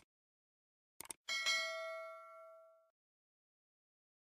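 Subscribe-button sound effects: two quick mouse clicks about a second in, then a notification bell chime that rings with several tones and fades out over about a second and a half.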